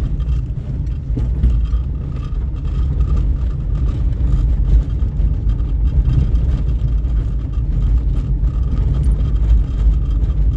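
A car driving over a cobblestone street, heard from inside the cabin: a steady low rumble of the tyres on the stones, with many small knocks and rattles all through.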